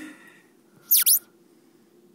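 A sudden loud, high-pitched squeak about a second in: two quick chirps that drop sharply in pitch, close enough to a mouse's squeak to startle a listener.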